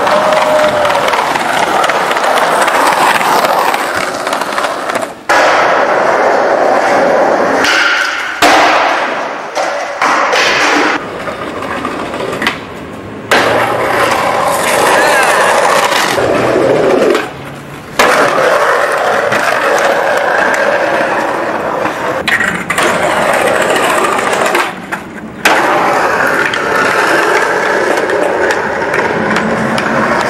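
Skateboard wheels rolling on concrete, with the clatter of the board during tricks, over several clips. The sound breaks off and starts again abruptly several times.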